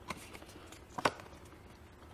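Stiff paper cards being handled and swapped in the hand: a short sharp flick at the start and a louder one about a second in, with light rustling between.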